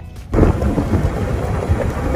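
Wind buffeting the camera microphone on a moving golf cart: a loud, rough rumble that starts abruptly about a third of a second in.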